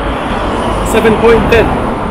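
Road traffic on a city street, cars going by in a steady rumble, with a man's voice talking briefly over it about halfway through.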